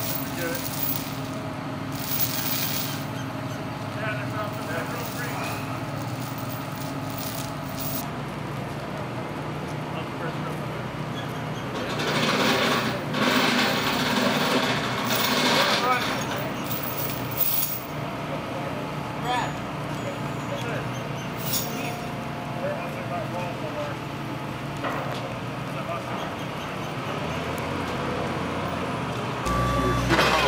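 Heavy equipment's diesel engine running steadily, with crew voices at a distance and a louder noisy stretch midway as the big log is lowered and tipped onto the road.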